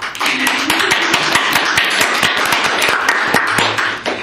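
Audience applauding, dense and loud, dying down near the end.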